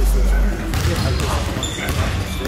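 A basketball being dribbled on a hardwood gym floor, with a low rumble over the first half second.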